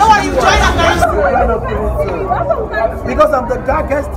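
Several people talking and chattering over one another close to the microphone, with crowd babble behind.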